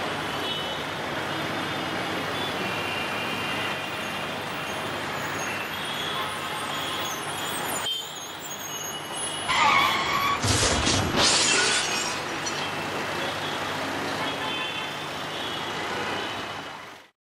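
Steady road-traffic noise, then about ten seconds in a brief tyre squeal and the crunching impact of a car colliding with a pickup truck.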